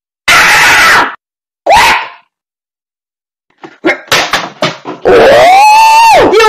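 An angry cartoon voice, distorted and clipping at full loudness: a harsh growl-like shout, a short yelp, a run of choppy snarling bursts, then a long loud angry yell that begins about five seconds in.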